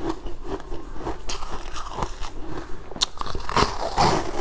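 Close-miked biting and crunching of frozen sweet ice, a run of crisp crunches with a sharp crack about three seconds in and louder crunching near the end.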